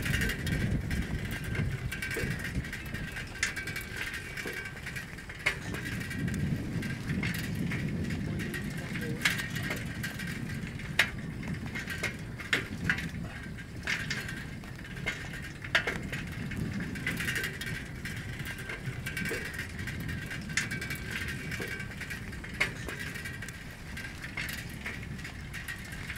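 An old, rusty bicycle ridden over a rough dirt track, heard close up: frequent sharp rattles and knocks from the frame and chain over the bumps, over a steady rumble of tyres on gravel. A steady high-pitched hum runs underneath.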